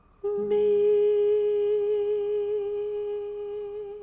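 A single voice humming one long held note, steady with a slight waver toward the end, fading a little before it stops.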